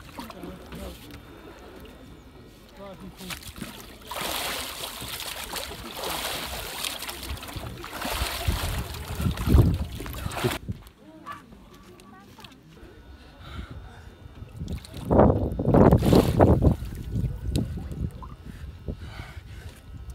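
Ice-cold water splashing and sloshing in a hole cut in the ice as bathers dunk under, in a few noisy bursts: one long stretch in the first half and another loud burst about three quarters of the way through.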